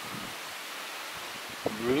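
Steady outdoor ambience: a soft, even hiss with no distinct events. A man's voice speaks one word near the end.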